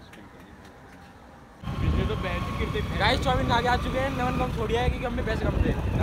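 Quiet street background, then from about a second and a half in, loud wind buffeting on the microphone and road rumble from a moving motorbike, with the riders talking over it.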